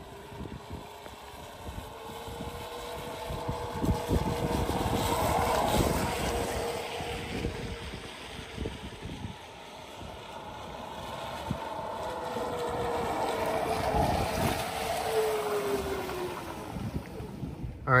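Two Ford F-150 Lightning electric pickups roll slowly past one after the other on wet pavement. Each one swells up and fades away, with tyre hiss and a steady hum from the pickup's low-speed pedestrian warning sound; the second one's hum falls in pitch as it goes by. Wind buffets the microphone throughout.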